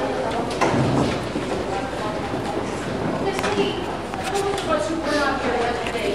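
Indistinct talking from several people in a crowded room, with a few light knocks and clicks.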